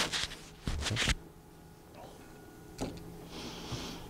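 Clothing rustling and scraping in two short bursts in the first second, as a hand rubs at a sweater collar, then a softer rustle near the end, over a faint steady hum.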